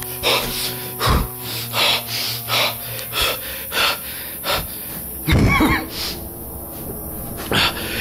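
A man's fast, heavy breathing, a breath about every 0.7 seconds, over background music with steady held notes. About five and a half seconds in there is one louder vocal sound.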